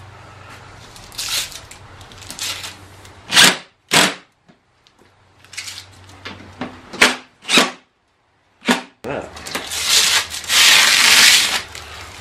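A few sharp clicks and knocks of handling, then, from about nine seconds in, a loud crackly rushing noise of protective plastic film being peeled off a new acrylic motorcycle windshield.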